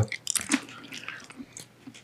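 Men chewing BeanBoozled jelly beans into close microphones: a cluster of short wet mouth clicks and smacks in the first half-second, then fainter, scattered chewing.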